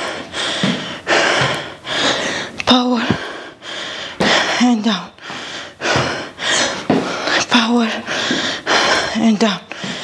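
A woman breathing hard and panting from exertion, each breath a breathy rush about once a second, with a few short voiced exhales or groans among them.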